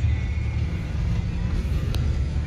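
Cabin noise of a moving car: a steady low rumble of engine and road heard from inside, with a single short click near the end.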